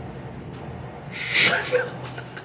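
A man gasps once, a short breathy burst about a second in, over a low steady hum; it is the start of an amused reaction.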